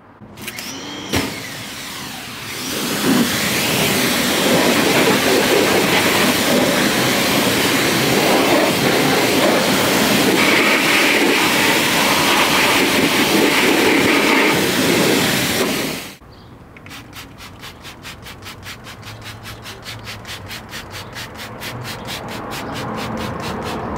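Pressure washer spraying water onto a brake rotor and into the wheel well: a loud steady hiss that cuts off suddenly about sixteen seconds in. After it comes a quieter, fast, even rhythm of short swishes, about four a second, growing louder.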